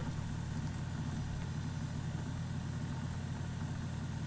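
Steady low hum with no speech, the background noise left once the talking stops.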